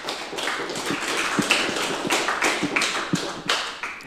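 Audience applauding: a dense, even patter of many hands clapping that eases off near the end.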